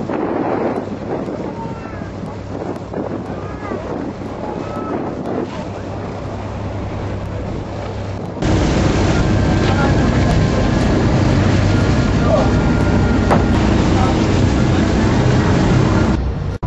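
A boat's engine runs with wind buffeting the microphone, a steady low hum under a noisy rush. About eight seconds in the sound abruptly gets much louder and stays that way.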